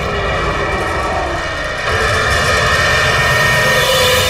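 Trailer sound-design drone: a loud, dense rumble of noise with several held high tones over it, swelling up a step about two seconds in.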